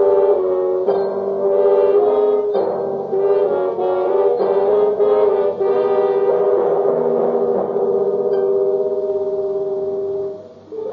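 Dramatic radio-drama music bridge of sustained chords ending the scene. The chords shift every second or so, then settle on one long held chord that dies away at the end.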